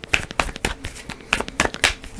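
A deck of tarot cards being shuffled by hand: a quick, irregular run of sharp card snaps and clicks.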